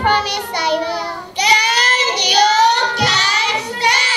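Young children singing into stage microphones, in phrases with short breaks between them.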